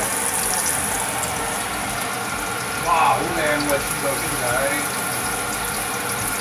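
Steady sizzling and light crackle of chopped garlic and onion frying in oil in a nonstick wok, with faint voices around the middle.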